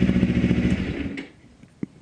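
Kawasaki Ninja motorcycle engine idling steadily, then switched off about a second in and dying away to quiet.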